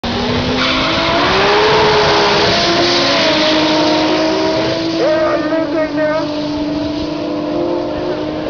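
A Nissan Skyline R32 and a modified Toyota Celica launching side by side in a drag race, engines at full throttle. It is loudest about two seconds in, then fades as the cars pull away down the strip. A voice is heard briefly in the second half.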